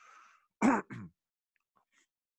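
A man clearing his throat once, short and loud, about half a second in, after a faint breath.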